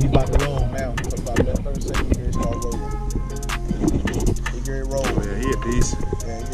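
Background music with a steady beat, a deep bass line and a singing or rapping voice.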